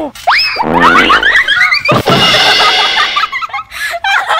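Young girls shrieking and squealing in high, wavering voices as they tumble over on a trampoline. A thump about two seconds in as they land on the trampoline bed, followed by a louder stretch of shrieking.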